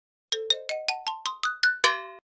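Electronic chime sound effect: a quick rising run of about ten short bright notes in under two seconds, ending on a fuller chord that rings briefly.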